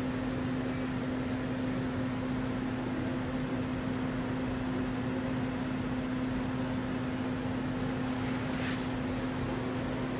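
A steady hum with one constant droning tone, like a fan or air-conditioning unit running, with a brief faint rustle about eight and a half seconds in.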